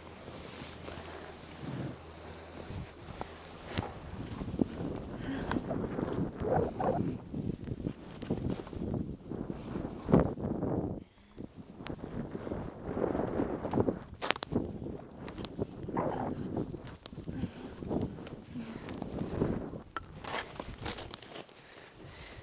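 Skis sliding and turning through deep powder snow, an uneven rushing that swells and fades with each turn, with a few sharp knocks along the way.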